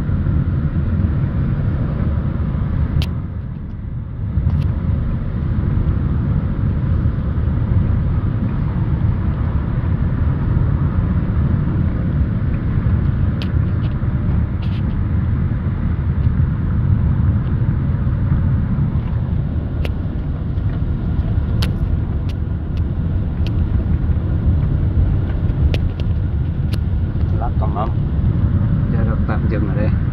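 Steady low rumble of a car driving, heard from inside the cabin, with a brief dip in level about three to four seconds in and a few light clicks or knocks scattered through it.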